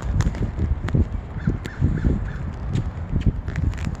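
Wind rumble and handling knocks on a phone microphone. About a second and a half in, a bird calls a quick run of about five short notes.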